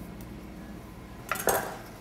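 Kitchen utensils and cookware: a quiet stretch, then one brief clatter about a second and a half in.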